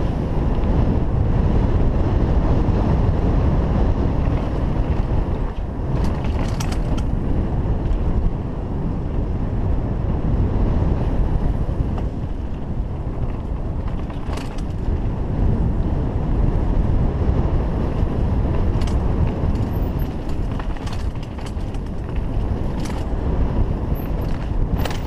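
Mountain bike descending a dirt singletrack: a steady rush of wind on the camera microphone mixed with tyre rumble over the dirt, with a few sharp clicks and rattles from the bike.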